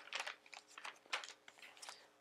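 Paper and card pages of a handmade junk journal rustling and flicking as hands turn and smooth them: a quick, irregular run of short, soft papery taps.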